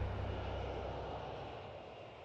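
Jet aircraft engine noise, a deep rumble with a hiss above it, fading steadily away.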